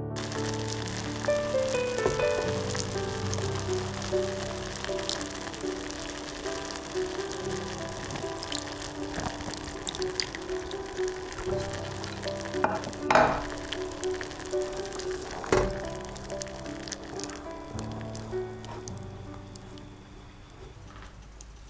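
Ginger syrup of sliced baby ginger and sugar bubbling and sizzling at a simmer in an aluminium saucepan, under soft piano music. A louder burst comes about 13 seconds in, then a sharp knock a couple of seconds later.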